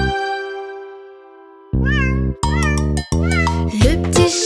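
A cartoon kitten's high meow, rising then falling, about two seconds in, followed by a shorter second meow. Children's background music fades on a held chord beforehand and comes back in under the meows.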